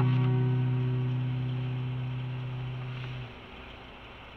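The last strummed guitar chord of the closing music ringing out and fading, cut off about three seconds in, leaving only a faint hiss.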